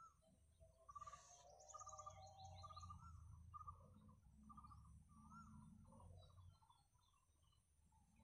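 Faint birds calling: a short note repeated every half second or so, and a quick run of high chirps about two seconds in, over a low rumble that fades after about six seconds.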